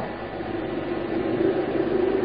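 Steady hiss of the recording with a faint low hum; no distinct event.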